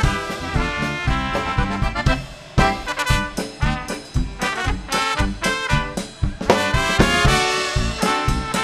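Polka band playing, with trumpets and trombone carrying the tune over a steady beat.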